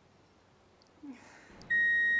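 A loud, steady, high electronic bleep sound effect, the kind used to censor a joke, starts near the end after a second of near silence and a brief hiss.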